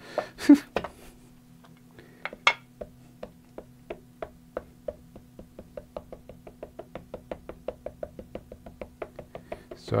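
Ink pad dabbed over and over onto a clear stamp on an acrylic block: a quick, even run of light taps, about four or five a second. The run follows a few louder knocks in the first couple of seconds.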